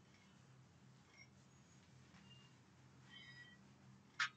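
Near silence: faint room hum, with a few faint chalk squeaks about a second in and near three seconds in as a word is written on a blackboard.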